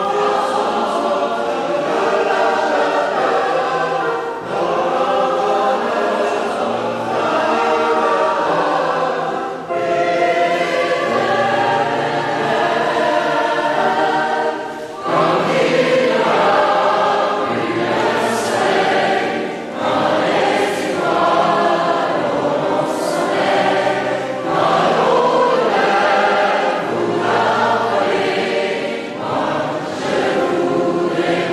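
Mixed choir of men's and women's voices singing a French song in sustained chords. It sings in phrases of about five seconds, with short breaths between them.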